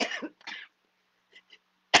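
A woman coughing and clearing her throat: a few short, harsh coughs at the start, a pause, and another cough right at the end.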